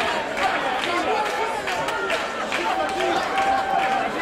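A group of people singing together on stage and clapping along in a steady rhythm, about two to three claps a second; near the end one voice holds a long note.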